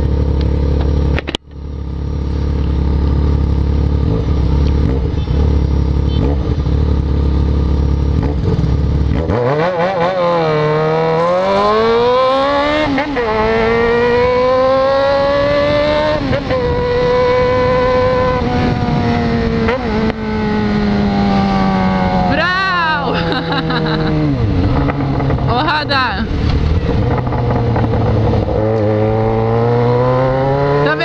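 Yamaha XJ6 inline-four motorcycle engine with an open, baffle-less exhaust, heard while riding: a steady low rumble for the first several seconds, broken by a brief dropout. From about nine seconds in, the engine note climbs through the revs and drops back several times as the bike accelerates and shifts or rolls off the throttle.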